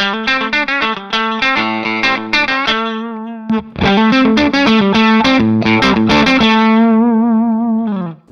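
Red Redhouse S-Style (Strat-type) electric guitar played through a Palmer DREI amp, chords and notes ringing out clean. A little under four seconds in, the BearFoot Sea Blue EQ pedal is switched on with its bass control boosted, and the guitar comes in noticeably louder and fuller, ending on a wavering held note.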